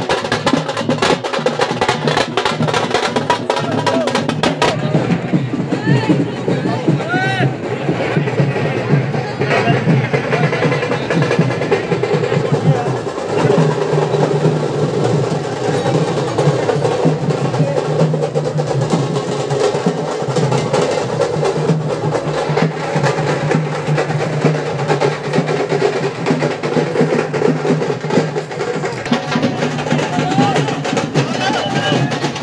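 A street drum band playing fast, dense rolls on stick-beaten drums over the voices of a large crowd. The sharp rapid strokes stand out for the first few seconds, after which the crowd's voices come forward with the drumming continuing beneath.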